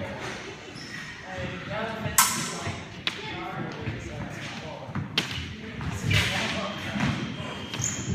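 Fencers' feet thudding on a wooden floor during an épée bout, with a few sharp clicks of the blades striking, about two, three and five seconds in. The sound echoes in a large hall.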